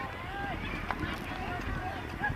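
Distant voices of a crowd and children chattering and calling out, in scattered short phrases, over a steady low rumble.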